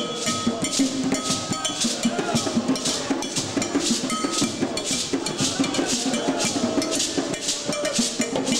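Live djembe hand drums played together by a group in a fast, steady rhythm, with a high, bright percussion part ringing on top of the beat.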